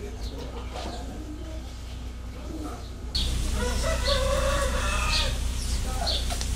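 A rooster crowing once, about halfway through, with small birds chirping around it over a steady low background hum that steps up suddenly a few seconds in.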